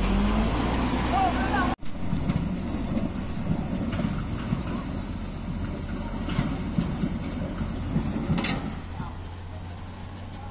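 Diesel engine of a Mitsubishi Canter dump truck loaded with stones revving under load as it labours up out of a river. The pitch rises at the very start, then there is an abrupt cut. After the cut a truck engine runs steadily from further off.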